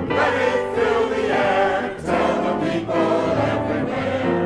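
Large mixed choir of men's and women's voices singing together in held, sustained notes, with a short break between phrases about two seconds in.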